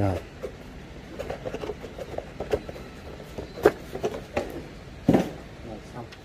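Handling of cardboard packaging and a small boxed accessory: a few scattered light knocks and clicks.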